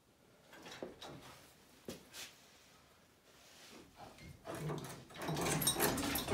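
Metal clunks and scraping as a Land Rover 2.25 diesel engine, hanging from a hoist chain, is rocked and worked loose from the bell housing. A few single knocks come first, then the scraping and clunking grow louder and busier in the last second or two.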